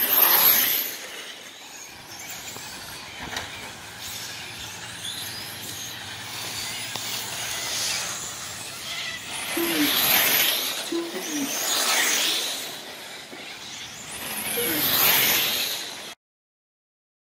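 Radio-controlled electric touring cars racing on an asphalt track: a hissing whine of motors and tyres that swells as cars pass close by, loudest at the very start and again about ten, twelve and fifteen seconds in.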